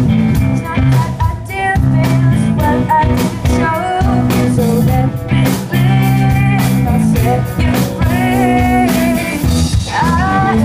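A rock band playing live: a female singer singing over electric guitar, electric bass and a drum kit, with regular drum hits under the sung melody.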